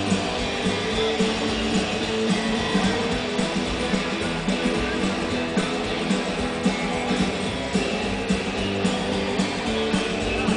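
Live country-rock band playing an instrumental passage: strummed guitars over drums and upright bass, with a steady beat.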